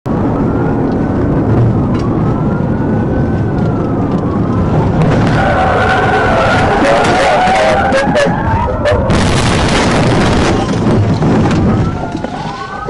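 Police siren wailing over loud engine and road noise. About five seconds in, tyres squeal and there are sharp knocks and scrapes as the cruiser pushes the fleeing Jeep sideways in a PIT maneuver.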